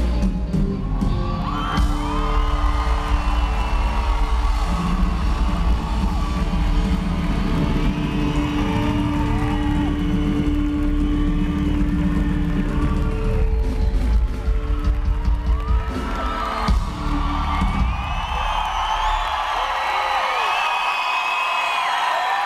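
A live rock band's closing chord ringing out, with the crowd whooping over it. The music stops about three-quarters of the way in, leaving the audience cheering and whooping.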